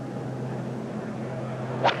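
A golfer's tee shot: one sharp crack of the club striking the ball near the end, over a steady low hum.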